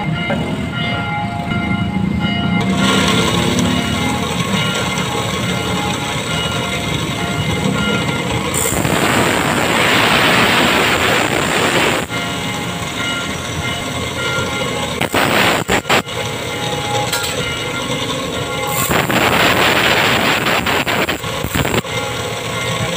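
Steel file rasping across the teeth of a hand saw: two runs of quick filing strokes lasting about three seconds each, the first about nine seconds in and the second near the end, with a few sharp clicks between them.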